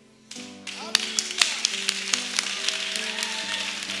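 A crowd applauding, a few close, sharp hand claps standing out, over soft sustained music.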